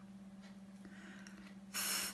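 A woman's breathy, unvoiced phonics sound 'th', air forced out between tongue and teeth as a short hiss near the end. Before it there is only a low steady hum and faint rubbing.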